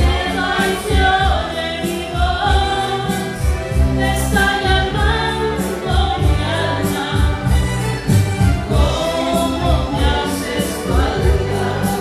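A woman singing a Spanish-language ballad into a microphone over a karaoke backing track with a steady bass beat.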